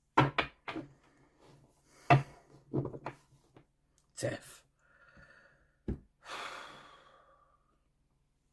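Tarot deck being handled over a wooden desk: a series of sharp taps and knocks, then a soft rustle of about a second near the end as a card is laid down.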